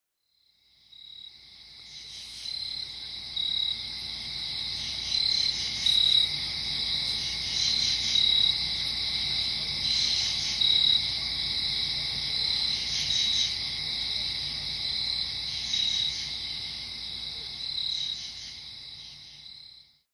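Night chorus of crickets chirping in a dense, steady, high-pitched drone. It fades in about a second in and fades out near the end.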